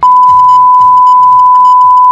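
Colour-bars test tone: one loud, steady, pure beep held at an even pitch, beginning suddenly. Faint music continues underneath.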